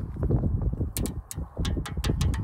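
Wind buffeting the microphone, with a series of sharp, irregular clicks in the second half.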